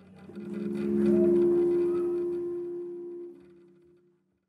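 A live metal band's single held chord that swells up over about a second, holds, and cuts off a little past three seconds in, leaving a short fading tail.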